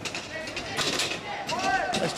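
Voices of spectators and players calling out at a box lacrosse game, with a raised shout near the end. Several sharp knocks and clacks are mixed in during the first second or so.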